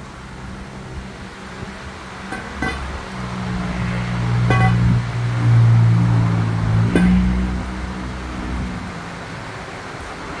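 A few sharp metal clanks, as a pry bar works at the engine to free it from its mounts, over a low steady hum that swells in the middle and fades near the end.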